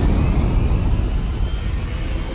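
Title-card sound effect: a loud, deep rumble that eases off slightly, with a faint rising whoosh over it in the first second.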